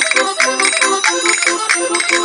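Marzioli button concertina playing a lively Portuguese vira melody, its reedy notes changing quickly. Ferrinhos, the metal folk triangle, ring out at a quick, even beat of about five strikes a second.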